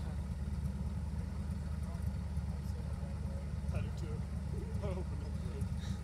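A Corvette Z06 and a Fox-body Mustang idling side by side at the start line, a steady low engine sound with no revving. Faint voices of onlookers come through about midway.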